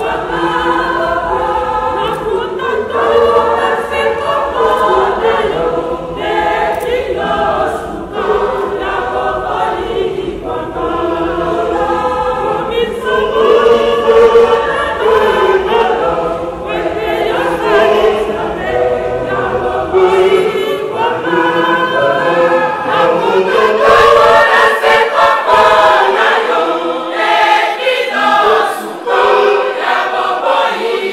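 A choir singing, many voices together in a steady stream of song.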